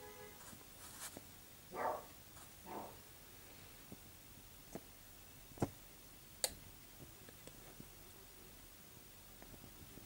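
Quiet room tone with two soft breaths in the first few seconds and four faint, sharp clicks spread through the middle.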